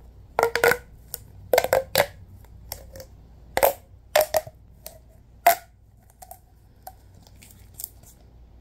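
Orange ribbed plastic pop tube toy being bent and stretched in latex-gloved hands, its corrugated segments snapping in quick clusters of sharp crackling pops. The pops are loudest in the first six seconds, then thin to a few faint clicks.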